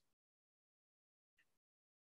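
Near silence.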